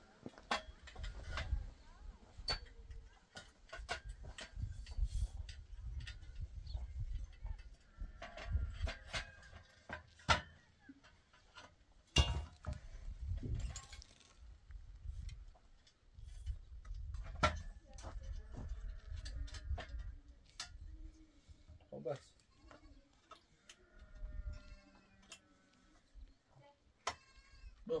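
Irregular sharp knocks of hand-tool work on wood, struck every few seconds, with a low rumble that comes and goes. Livestock bleat a few times near the end.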